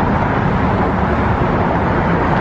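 Steady, unbroken noise of road traffic passing on the bridge.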